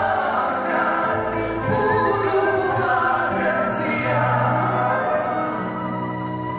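Live performance of an old Russian romance: a woman singing with vibrato, accompanied by acoustic guitar and violin.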